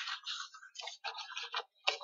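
A string of short, irregular clicks and rustles, a few each second.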